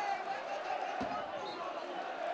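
Football stadium crowd noise: many voices shouting at once, with a dull low thump about a second in.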